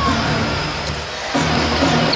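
Music over the public-address system in a basketball arena, over a steady crowd noise. Its low notes get stronger about halfway through.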